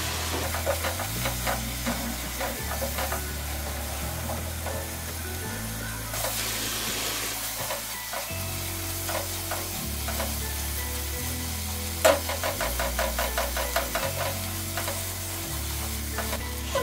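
Onion and spice masala sizzling in oil in a nonstick pot, a spatula stirring and scraping it in repeated strokes, with a quick run of scrapes about twelve seconds in. Soft background music with a slow bass line underneath.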